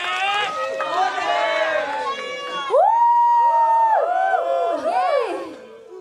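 High voices shouting and calling out over a crowd, in long cries that swoop up and down, one held for about a second near the middle, with no music playing.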